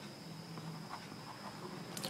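Faint scratching of a pen writing on paper, over a steady high-pitched whine and low room hum.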